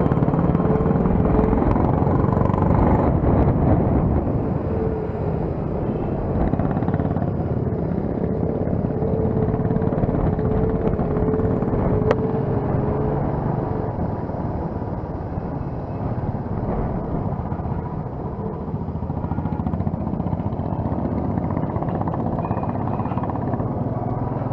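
Royal Enfield single-cylinder motorcycle running at road speed, heard from the rider's mounted camera: a steady engine drone mixed with heavy wind rush on the microphone. There is a single sharp click about halfway through.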